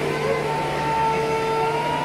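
Violin and acoustic guitar playing, the violin holding long, steady notes.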